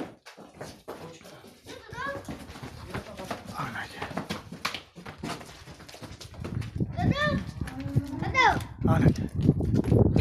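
Hoof steps of a bull on a concrete floor as it is led along, followed about two-thirds of the way in by men's loud, repeated rising-and-falling calls.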